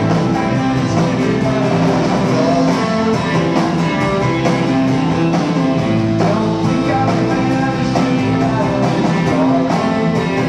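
Live rock band playing, guitars to the fore over a steady full-band sound, with sustained notes and no pause.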